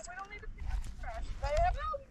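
A man's excited, high-pitched wordless shouts, several short rising-and-falling calls, as he fights a hooked bass that has just struck his jerkbait.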